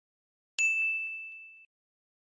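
A single bright ding from an edited-in chime sound effect, ringing for about a second and then cut off sharply.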